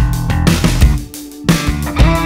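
Instrumental progressive rock played by electric guitar, bass guitar and drums, with sharp drum hits. The band drops away briefly about a second in and comes back in together with a loud hit at about a second and a half.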